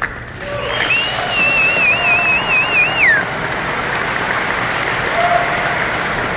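Audience applauding, with one person's long warbling whistle from about a second in that slides down in pitch near three seconds.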